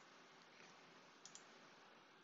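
Near silence: faint hiss, with a couple of faint computer mouse clicks a little past the middle.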